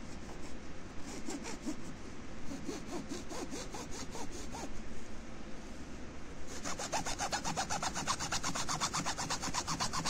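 Junior hacksaw sawing through the plastic housing of a water-purifier filter cartridge, in rapid back-and-forth strokes. From about two-thirds of the way in the strokes become louder and harsher.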